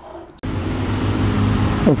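Steady outdoor background noise, a broad hiss over a low hum, starting abruptly about half a second in, with a man's brief "ok" at the end.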